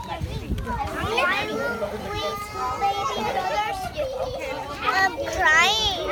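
Children's voices chattering and calling out over one another, with adult voices among them; a child's high-pitched, wavering call rises above the rest near the end.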